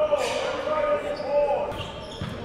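Echoing sounds of a basketball game in a gym: a basketball bouncing on the hardwood court and a voice in the hall holding one long, wavering call.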